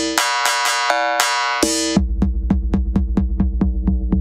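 HammerHead drum machine beats played through the BeepStreet Combustor resonator effect, which adds sustained ringing pitched tones under the hits. In the first half the hits are dense and bright with hiss; about halfway the sound changes to sharp clicks at about four a second over a deep low throb, as the resonator's filter is turned.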